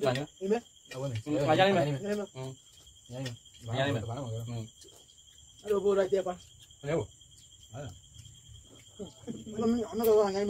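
Crickets trilling steadily at a high pitch behind a conversation between several people.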